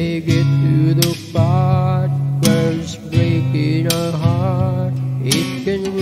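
Acoustic guitar strumming chords every second or two, with a held melody line wavering in pitch over them.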